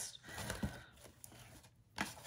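Faint rustling and light handling of folded cardstock and ribbon, with a few soft clicks, dying away to near silence.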